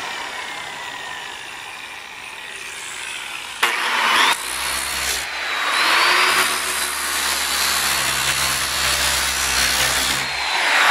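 Electric disc sander with a coarse 24-grit disc: its whine falls as it coasts down, then it is switched on again about three and a half seconds in and spins up with a rising whine. It grinds into the wood in short passes and then keeps running steadily.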